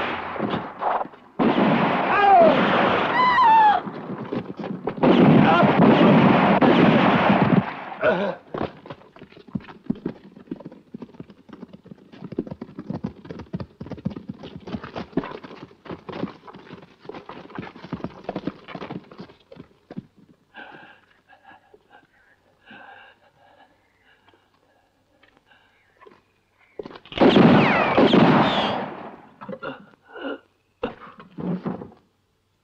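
Movie gunfight sound effects: loud bursts of gunfire mixed with cries, then a long run of sparser shots and clatter that thins out, and another loud burst with cries near the end.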